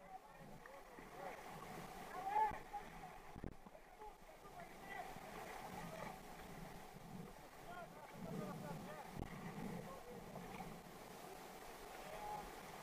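Whitewater rushing and gurgling around a kayak, with paddle strokes splashing through it and a few sharp knocks, the loudest about two and a half seconds in.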